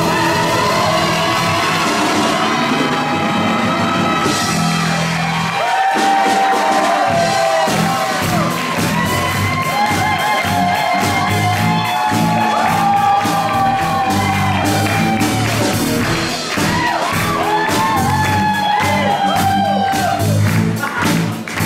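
Live rock band of electric guitar, bass, piano and drums playing loudly under long sung notes held with vibrato. The drums grow busier about eight seconds in.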